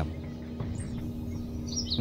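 Background music: a soft sustained drone of held tones, with a bird chirping faintly in the background near the end.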